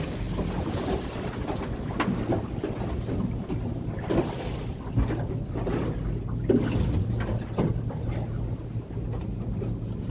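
A small boat running over a light swell: a steady low motor hum under wind rush on the microphone, with the hull slapping the water every second or two.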